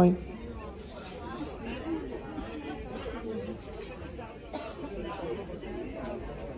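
Quiet background chatter of several people talking, with no single voice up front.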